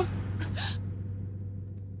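A person's short, sharp gasp about half a second in, a startled reaction to a fright, over a low steady drone that slowly fades.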